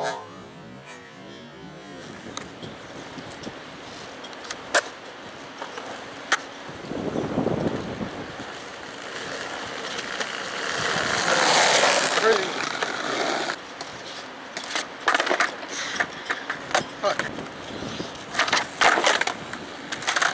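Skateboard on flat asphalt during hospital flip attempts: urethane wheels rolling, and sharp wooden clacks of the tail popping and the board slapping down, with a quick series of clacks near the end.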